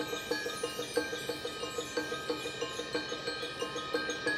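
Marching band front ensemble playing a soft mallet-percussion passage: marimba and bell-like keyboard percussion notes repeating about three times a second over sustained ringing tones.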